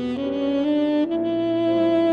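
Saxophone playing a melody of held notes that step upward, settling on a long sustained note about a second in, with grand piano accompaniment.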